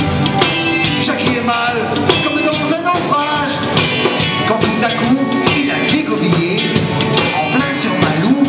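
Live rock band with Breton folk colouring playing loudly with drum kit and bass guitar, a lead melody line running over the top in what sounds like an instrumental break.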